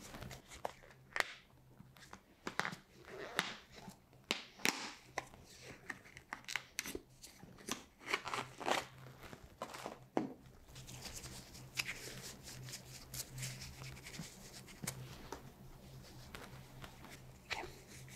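An otoscope being sanitized by hand: irregular crinkly rustles of a disinfectant wipe and small plastic clicks, with a stretch of softer continuous wiping rustle about two-thirds of the way through.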